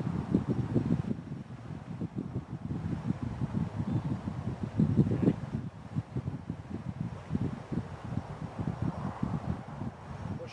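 Wind buffeting the microphone outdoors: a low, irregular, gusting rumble that rises and falls in loudness.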